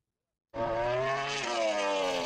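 Sound-effect stinger of a racing motorcycle engine at high revs, coming in about half a second in and easing slightly down in pitch. It is the cue that opens a podcast segment.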